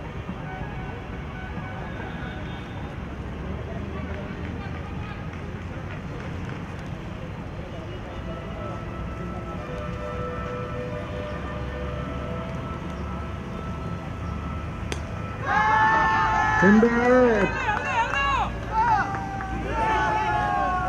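Steady outdoor background rumble and hiss at a cricket ground with faint distant voices, then loud voices calling out close by from about three-quarters of the way in.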